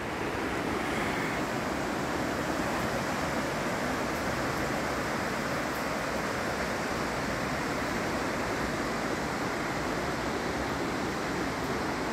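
Steady rushing of a river's whitewater rapids.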